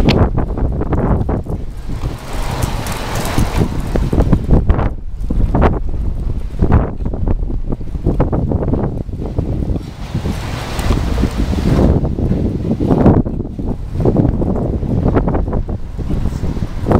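Strong wind buffeting the microphone in irregular gusts, over the sound of a freight train's cars rolling past on the track.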